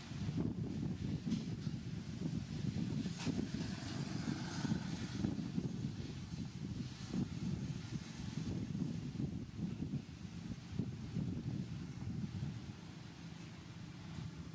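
A low, uneven rumble that runs on throughout, with a few faint clicks over it.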